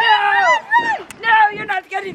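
Girls' high-pitched voices calling out without clear words: several long, drawn-out cries in a row, each falling in pitch at its end, with a brief click about halfway through.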